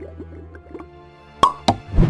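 Outro jingle: faint music with two quick plops about a second and a half in, then a louder plop at the end.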